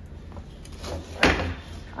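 A cane table set down in front of the children: a short scrape leading into one sharp knock a little past halfway.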